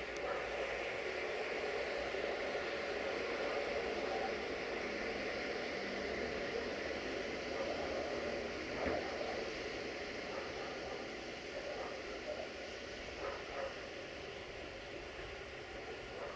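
LDH1500 diesel-hydraulic shunting locomotive running, a steady engine hum under a hiss of noise that gets slowly quieter through the second half. One short knock about nine seconds in.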